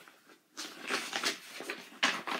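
A sheet of paper rustling and crackling as it is handled. The run of rustles starts about half a second in.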